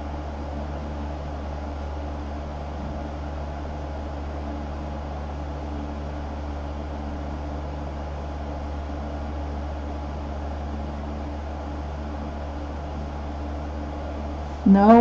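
A steady background hum with hiss, unchanging throughout: a low drone with a few faint steady tones, the sound of a room appliance such as a fan running.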